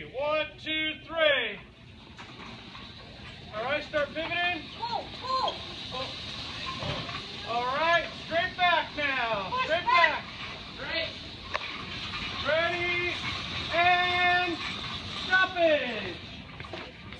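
People's voices in a large hall: indistinct talking and a few drawn-out calls, over a steady background hum.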